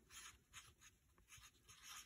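Faint, short strokes of a Sharpie felt-tip marker writing a word on paper.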